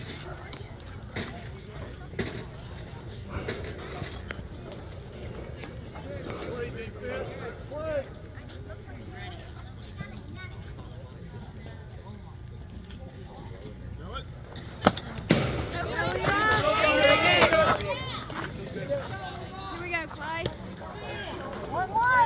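Outdoor background rumble with scattered voices and small clicks; about 15 seconds in come two sharp knocks close together, followed by a couple of seconds of raised, shouting voices.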